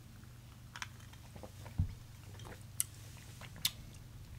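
Faint mouth sounds of a person sipping and tasting a cocktail, with a short low sound about two seconds in and a few sharp light clicks scattered through, over a low room hum.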